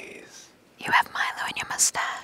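Whispering held right up to a small clip-on microphone, breathy and without voice. It pauses briefly about half a second in, then resumes, with a sharp hissing 's' near the end.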